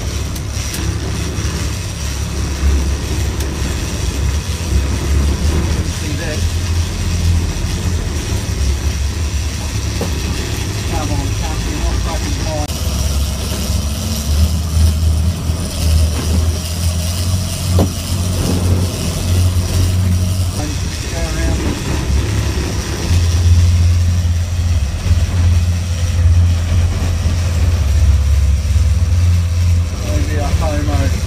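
Charter fishing boat's engines running, a steady low rumble that grows louder in stretches as the boat manoeuvres, with faint voices now and then.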